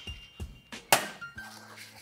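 Two metal cocktail shaker tins being fitted together and knocked to seal them over crushed ice: a few short metallic clinks and knocks, the loudest about a second in, with faint background music.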